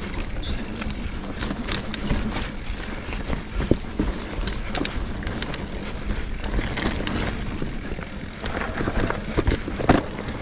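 Sonder Evol GX mountain bike riding down a dirt trail: a steady rolling rumble of tyres on the ground with frequent sharp clicks and rattles as the bike hits roots and bumps.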